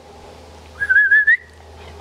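A person whistling one short, wavering note that rises slightly at the end, calling the Labrador pups over.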